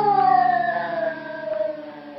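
A woman's voice holding one long sung note that slides steadily down in pitch and fades away.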